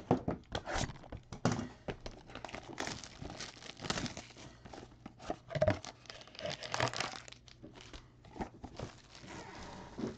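Foil trading-card pack wrappers crinkling and crackling in irregular bursts as the packs are handled and set down on the table.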